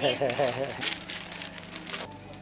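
Clear plastic packaging of a set of baby rattles crinkling as it is handled, in several short sharp rustles, under a voice.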